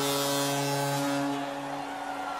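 Arena goal horn sounding one steady, held chord after a home goal, fading out near the end.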